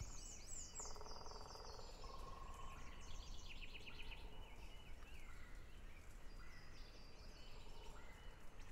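Faint outdoor birdsong ambience: several small birds chirping and trilling over a low steady noise, with a buzzy trill about a second in.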